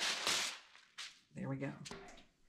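Parchment paper pulled from its roll and torn off against the box's cutting edge: a short, sharp rasp, then a single light knock about a second in.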